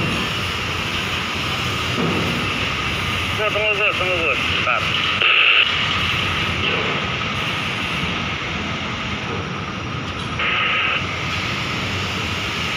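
Steady background noise of a busy construction site, with two brief hissy bursts about five and ten seconds in.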